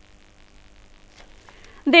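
Faint crackling background noise with scattered soft clicks and a low steady hum that fades out about halfway through. Just before the end a woman's voice starts speaking, much louder.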